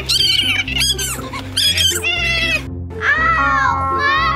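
Background music under a woman's high-pitched pretend crying in pain: several short wavering cries, then a longer falling wail near the end.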